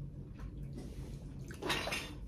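Quiet room noise with a low, steady hum, and a brief faint voice near the end.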